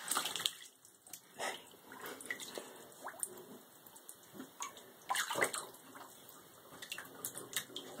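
An otter swimming in bathtub water, making irregular small splashes and sloshes, the largest about five seconds in.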